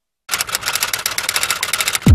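Typewriter sound effect: a fast, loud run of keystrokes clattering without a break, starting about a quarter second in and running until the end.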